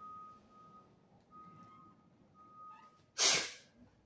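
Three short, faint beeps at one steady pitch about a second apart, then a short, loud burst of breath close to the microphone.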